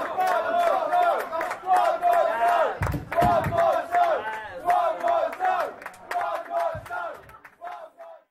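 Audience cheering and shouting with scattered claps, fading out near the end.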